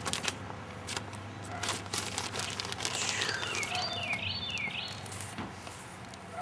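Rustling, rubbing and knocks of a handheld camera being moved about. Midway, a bird sings a short run of four quick downslurred whistles.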